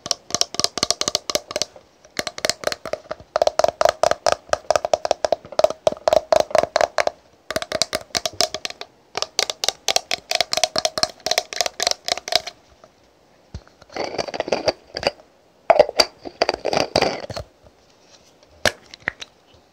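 Long fingernails tapping rapidly on a green plastic cosmetic toner bottle, in quick runs of clicks with short pauses between them, each run carrying the bottle's hollow ring. Near the end the strokes run together into a rougher, scratchier patch.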